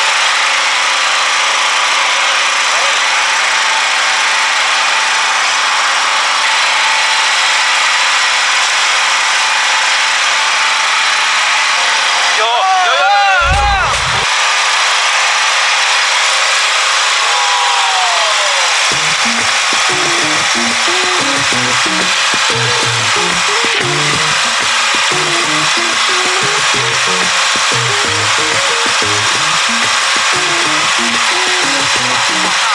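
A loud, steady rushing noise with no low end. About halfway through there is a short warbling sound effect, then a falling glide, and about two-thirds of the way in a background music bass line starts under the noise.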